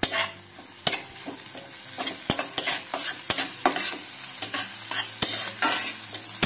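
Spatula stirring chopped onion, curry leaves and garlic frying in oil in an iron kadhai: repeated sharp scrapes against the pan over a sizzle, as the onions are sautéed.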